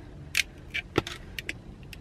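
Light metallic clinking of a gold sunglass chain being handled and fitted onto a pair of metal sunglasses: about six short, sharp clicks.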